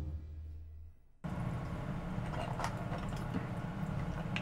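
Background music fading out. After about a second it cuts to kitchen room sound: a steady low hum with scattered small clicks and taps.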